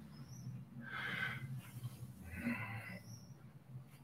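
A person's soft breaths, two of them, about a second in and about two and a half seconds in, as he holds a deep forward-bending stretch.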